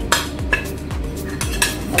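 A steel spatula and a plate clinking against the pan as a cooked appam is lifted off and slid onto the plate: a few sharp clicks over a steady background music beat.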